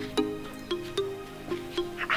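Background music of plucked string notes, about three a second, each note starting sharply and fading.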